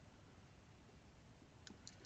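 Near silence: faint room tone, with two or three small clicks close together near the end.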